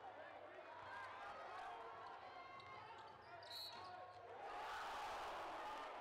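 Basketball being dribbled on a hardwood court under the murmur of crowd voices, with a brief high note about three and a half seconds in and the crowd noise swelling louder over the last second and a half.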